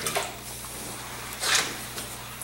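Faint handling of a wet rag: a short swish about a second and a half in, as a rag soaked in diluted muriatic acid is lifted from a plastic bucket and wiped onto the concrete surface, over a steady low hum.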